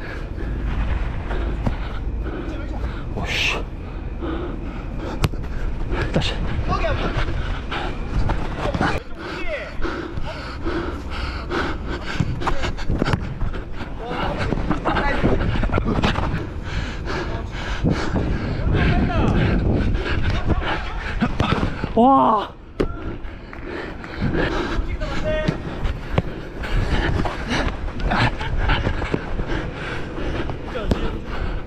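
Running footsteps and ball touches on artificial turf close to a body-worn camera, with the wearer's breathing and brief shouts from players; the loudest is a short shout about two-thirds of the way through.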